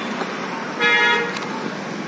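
A vehicle horn gives one short steady toot, about half a second long, near the middle, over steady street noise.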